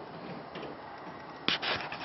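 A single sharp knock about one and a half seconds in, followed by brief scraping, against faint steady room noise.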